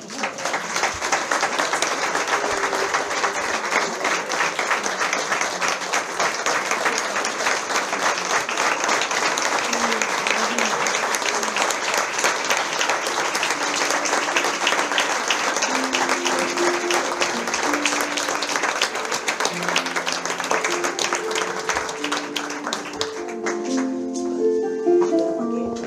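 Audience applauding steadily throughout. From about halfway through, an instrument starts playing single notes under the applause, more of them near the end.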